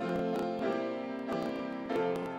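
Piano playing a hymn tune in sustained chords, the notes changing about every second.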